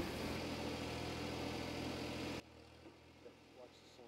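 Engine idling steadily, cutting off abruptly about two and a half seconds in and leaving only faint background sound.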